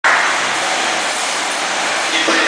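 Schwinn AirDyne exercise bike's air-resistance fan spinning fast under a hard all-out effort: a steady, loud whoosh of moving air.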